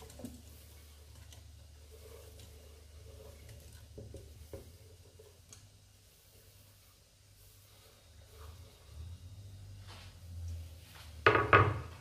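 Broccoli florets being pushed off a wooden cutting board into a metal cooking pot: soft scraping and light knocks of wood against the pot rim, with a few louder knocks shortly before the end.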